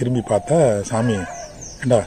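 A man's voice speaking in drawn-out, sing-song phrases, with two short high falling chirps from a small bird about three-quarters of the way through.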